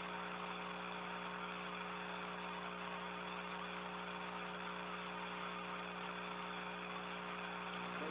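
Steady background hum and hiss on the space station's audio link, several fixed hum tones over an even hiss, with nobody speaking.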